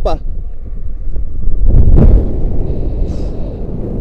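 Wind rushing over an action camera's microphone during a rope jump's fall and swing, a low rumble that swells to its loudest about two seconds in and then eases.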